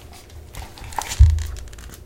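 Hardcover picture book being handled as it is lifted off a wooden book stand: faint paper rustling and small clicks, with a dull thump a little over a second in.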